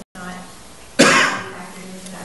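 One loud, short cough about a second in, over a low murmur of voices.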